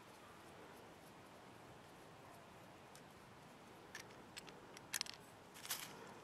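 Near silence, then a few faint short clicks and scrapes in the second half: a knife blade scraping at waxy, cotton-based fire-starter fuel in a small metal tin, with the blade not quite biting into the material.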